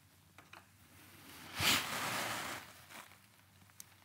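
A few faint clicks from a Phillips screwdriver set in a front derailleur's high limit screw, with a soft rushing noise lasting about a second in the middle.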